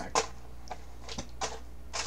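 Hands rummaging through a cardboard box of packaged snacks, making a few short, irregular clicks and rustles of wrappers and cardboard.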